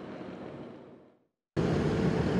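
A low steady background hum fades out to a moment of silence. About one and a half seconds in, a loud steady engine rumble starts abruptly: fire engines and a water tender running at a fire scene.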